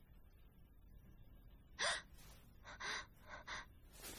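A person gasping: one sharp breathy gasp about two seconds in, then three shorter gasping breaths.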